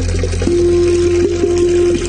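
Water running steadily from the spout of a Roman cast-iron street drinking fountain (nasone), with a low rumble under it. A steady single tone comes in about half a second in and holds.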